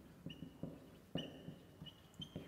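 Marker pen on a whiteboard, writing: a few short, high squeaks with soft taps and strokes of the tip.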